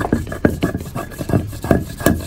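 Hand stone worked against a flat grinding stone, crushing roasted shea nuts: a string of short scraping knocks, about three strokes a second.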